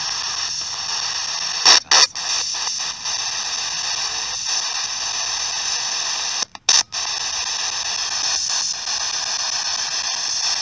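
Ghost-hunting spirit box sweeping radio stations: a steady wash of radio static hiss, chopped by brief breaks about two seconds in and again past halfway.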